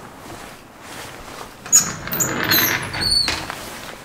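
Antique elevator's gate and car doors being closed: a sharp clack about two seconds in, then about a second of high metallic squealing and rattling.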